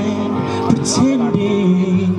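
A man singing into a microphone over an instrumental backing of long held chords.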